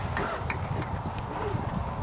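Open-air ambience: faint distant voices and scattered light clicks over a low rumble of wind on the microphone.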